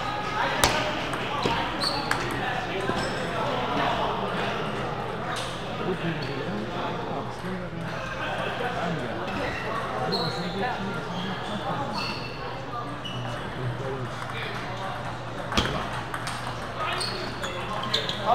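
Table tennis balls clicking off tables and paddles from many games at once, with a few sharper knocks, over a crowd's steady chatter and a constant low hum in a large hall.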